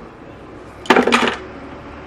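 Metal hand tools clattering as they are put away, a brief cluster of clinks and knocks about a second in.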